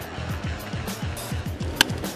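Background music with a steady low beat; near the end, a single sharp crack of a baseball bat hitting a pitch.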